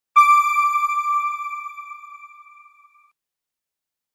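A single bell-like chime that strikes just after the start, then rings out and fades away over about three seconds. It is the logo sting that closes the news clip.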